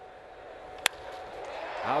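A single sharp crack of a wooden bat hitting a pitched baseball, a little under a second in, over low steady ballpark background noise.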